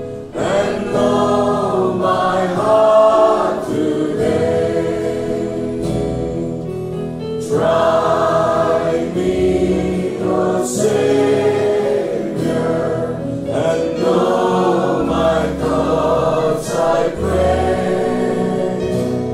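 A choir singing a gospel worship song with musical accompaniment, the phrases flowing on without a break.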